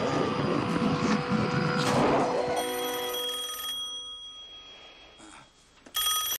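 Film soundtrack at the close of a violent struggle: a dense, noisy swell for the first two and a half seconds, then a sustained ringing chord that starts suddenly and slowly fades away.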